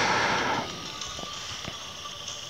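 A slow exhale close to a headset microphone, a soft breathy hiss that fades out within the first half-second or so, then soft meditation background music with faint steady high tones.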